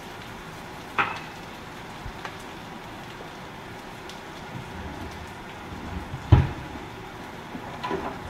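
Garlic cloves and red onion frying in oil in a pot on a gas stove, a steady sizzle. A sharp knock comes about a second in, and a louder thump a little after six seconds.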